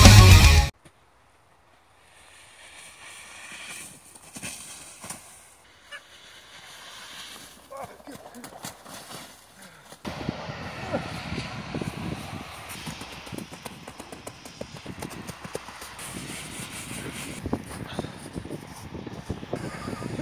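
Loud music that cuts off abruptly under a second in. After a quiet stretch, from about halfway on, snow is handled as a big snowball and snowman are packed: many short crunches, with faint voices.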